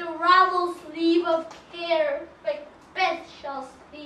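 A child's voice speaking lines in short phrases with brief pauses.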